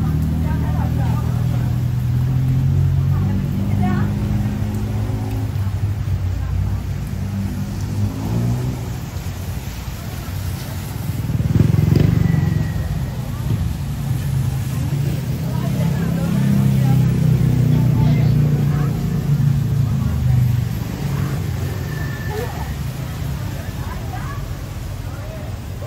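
City street traffic: vehicle engines running steadily in the road, with a louder vehicle passing about halfway through. Passers-by talk in the background.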